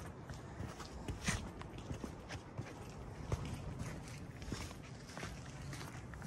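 Footsteps of people walking on a path strewn with dry leaves, an irregular series of steps.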